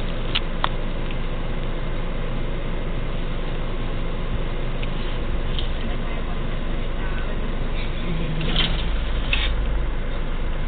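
Steady road and engine noise heard from inside a moving car's cabin, with two light clicks in the first second and a short louder stretch near the end.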